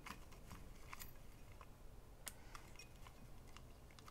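Faint, sparse clicks and rustles of small folded paper slips being stirred by fingers in a glass bowl.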